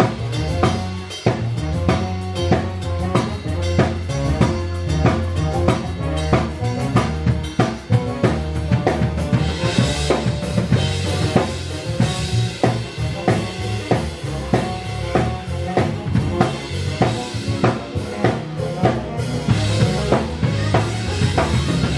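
Band music driven by a drum kit playing a steady beat of bass drum, snare and rimshot hits over a sustained low bass line.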